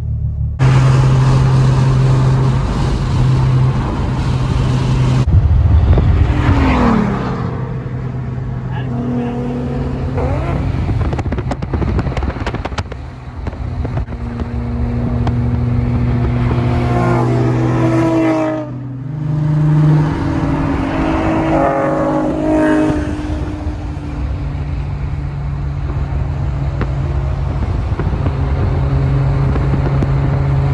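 Nissan 350Z's V6 heard from inside the cabin while driving, a steady engine drone under road noise. The revs fall about six seconds in and climb again in the second half, with a short run of small pops from the crackle-map tune near the middle.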